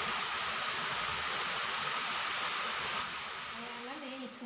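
Potato cutlets deep-frying in hot oil: a steady sizzle of bubbling oil with a few faint pops.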